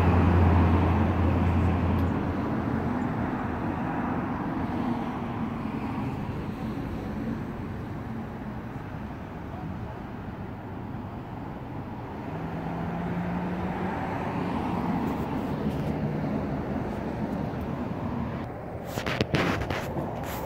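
Steady road traffic and vehicle engine noise, with a low hum that fades in the first couple of seconds and a few sharp knocks near the end.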